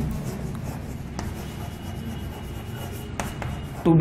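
Chalk writing on a chalkboard: a dry scratching as the letters are written, with a couple of short sharper strokes, over a steady low hum.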